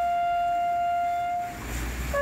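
A lone brass horn playing slow, long held notes. One note is held steady for about a second and a half, followed by a short break with a rush of wind noise, and then a lower note begins just at the end.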